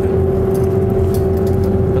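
Steady low mechanical rumble with a constant hum, unchanging throughout, with a few faint short crackles over it.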